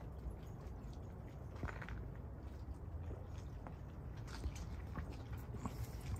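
Quiet outdoor background: a low, steady rumble with a few faint clicks and rustles.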